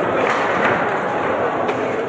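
Busy table-football tournament hall: a steady din of many voices, with a few sharp knocks of balls and rods from games at other tables.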